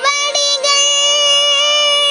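A boy singing a Tamil devotional song, holding one long note over a steady drone.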